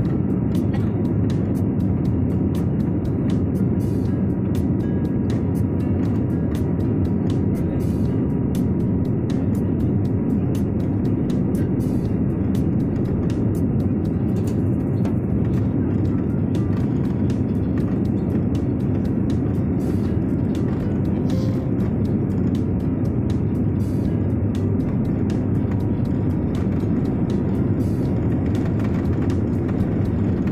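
Steady cabin noise of a jet airliner on the ground, its engines running as it taxis, a low even rumble with faint irregular clicks over it.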